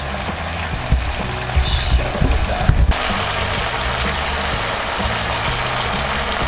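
Chicken, chillies and holy basil sizzling in a frying pan in oyster-sauce glaze, with background music playing over it.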